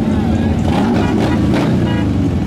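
Motorcycle engines running close by, a loud, steady rumble that wavers slightly in pitch.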